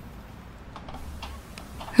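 Faint, scattered ticking over a low background hum.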